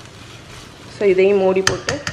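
Sliced onions and tomatoes frying with a soft sizzle in a stainless steel kadai. Near the end, a wooden spoon stirring them knocks against the pan's side several times in quick succession.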